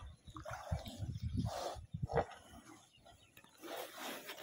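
Herd of water buffaloes swimming close together in a water tank, making a few short, faint animal sounds over a low background.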